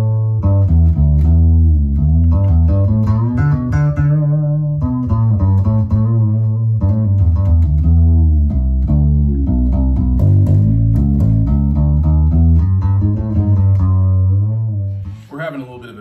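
Fretless Music Man StingRay bass with flatwound strings, played as a melodic bass line whose notes glide in pitch between one another. The playing stops about a second before the end.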